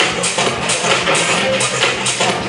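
Electronic dance music mixed live by a DJ on turntables and a mixer, with a steady beat.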